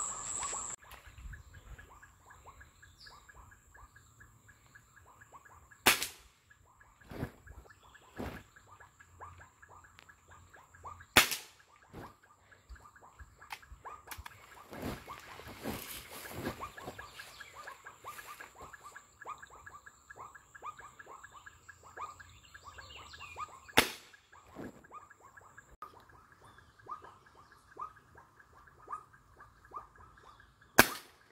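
Air rifle fired several times at an iguana in a palm: three sharp cracks about 6, 11 and 24 seconds in, with fainter clicks between. Under them runs a steady high insect whine and a rapid pulsing chirp.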